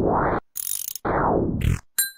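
Cartoon machine sound effect from the function-box web app as it processes an input: two bursts of dense ratcheting clicks, each under a second, with a short hiss between them. A bell-like ding begins right at the end as the output appears.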